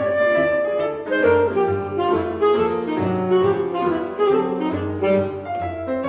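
A chamber trio of alto saxophone, cello and piano playing a jazz-tinged neoclassical passacaglia. The saxophone leads with a winding chromatic line in quick notes over the cello's repeating ground bass and the piano's accompaniment.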